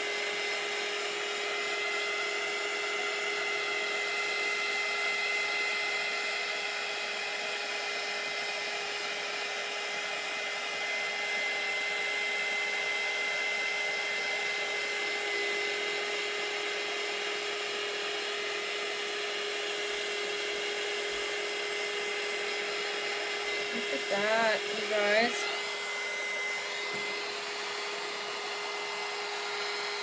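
Handheld craft heat tool running steadily, a constant fan whir with a steady hum, as it blows hot air to dry marker ink on a canvas.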